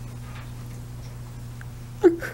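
Steady low electrical hum of an old courtroom video recording, with a couple of faint small clicks.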